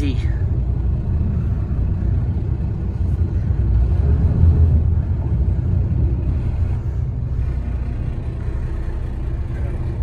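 A water taxi's engine running steadily, heard from inside the passenger cabin as the boat manoeuvres in to dock, a low rumble that swells slightly about halfway through.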